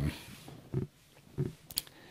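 A man's quiet mouth and throat noises in a pause between phrases: two short, low grunt-like hums and then a sharp lip click.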